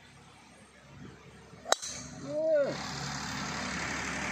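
Golf driver striking a golf ball: one sharp crack a little under two seconds in.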